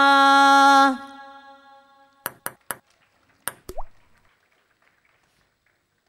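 The aarti singing ends on a long held sung note, which stops about a second in and rings away in the hall. Five short, sharp clicks or pings come in the middle, the last with a brief rising slide.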